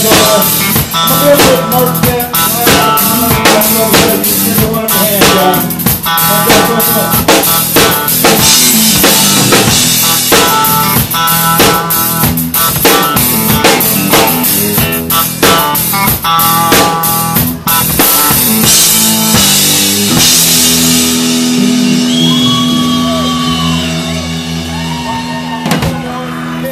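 Live country band playing at full volume, the drum kit loudest, with rapid kick, snare and rimshot strokes and cymbal crashes driving the song's ending. About twenty seconds in the drumming stops and a final chord is held and left ringing.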